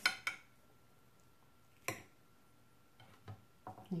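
A metal fork clicks and scrapes against a ceramic plate a few times at the start as it cuts a bite of fish. After that there is only faint room tone.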